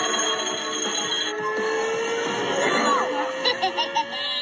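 Cartoon soundtrack playing from a TV: background music mixed with sound effects, with a long, slowly rising tone from about a second in.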